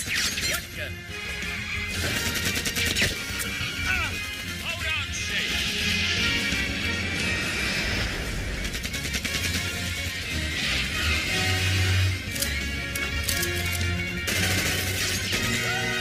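Sparta-remix style music: a driving beat with heavy bass, with short chopped voice samples gliding up and down in pitch cut into it. Sharp crash-like hits are also cut in.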